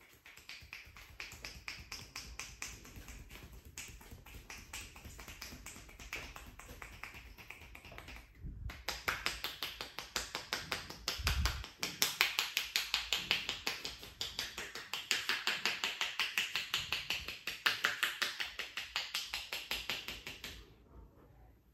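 Indian head massage: a barber's hands tapping rapidly and rhythmically on a person's scalp, several quick strikes a second, growing louder about nine seconds in.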